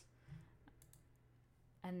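A few faint computer clicks over quiet room tone, then a woman's voice starts near the end.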